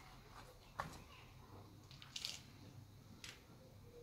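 Near silence, with three faint, brief rustles of kitchen scraps and compost being handled in a metal bowl.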